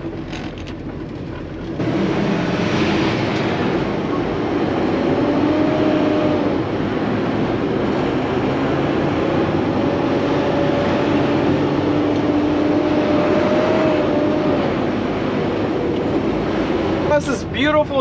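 Inside a Peterbilt semi-truck's cab while driving: a steady diesel engine drone with road noise, stepping up louder about two seconds in, with faint engine tones that drift slightly in pitch.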